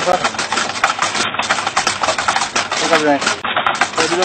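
Wooden well pulley turning under a rope hauled by a camel, a continuous fast rattling clatter of wood on wood. A brief voice-like call about three seconds in.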